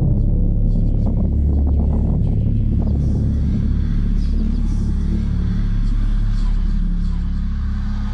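Loud, deep cinematic rumble of trailer sound design, holding steady and starting to fade near the end.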